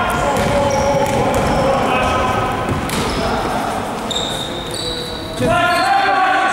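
A basketball being dribbled on a gym floor, the bounces echoing in a large sports hall, under players' shouts and calls, one louder call near the end.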